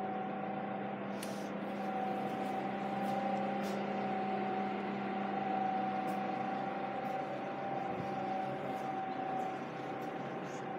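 Steady indoor background hum: two constant tones, one low and one higher, over an even hiss, with a few faint ticks now and then.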